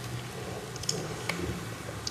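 A spatula folding stiff egg whites into a thick lemon cream in a clear mixing bowl: a faint, soft mixing sound with a few light clicks of the spatula against the bowl, about a second in, over a steady low hum.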